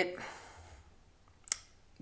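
A man's voice cuts off after one short word. In the quiet pause that follows, a single sharp click sounds about one and a half seconds in.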